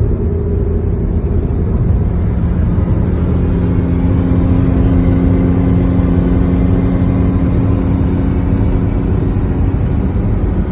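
Steady road and engine noise heard inside a car's cabin at highway speed, with a strong low rumble. A steady low engine drone comes in about three seconds in and holds.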